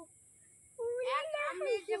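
A woman speaking in a high, sing-song voice. It starts a little under a second in, after a brief near-quiet pause.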